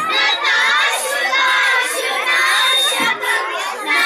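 A group of children singing a Ganesh stotram together, loud and continuous, many voices in unison.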